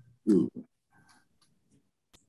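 A man's short, hesitant "ooh" vocalization, then near silence.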